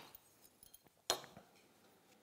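A metal marking square clinks once as it is set against the edge of an MDF board, with a few faint taps and handling sounds before it.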